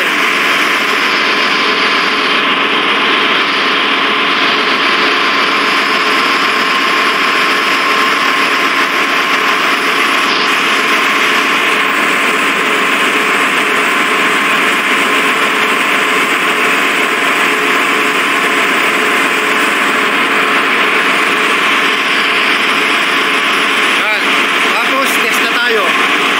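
Loud, steady machinery noise of a ship's engine room: an even rushing drone with a thin, steady whine running through it, unchanging in level.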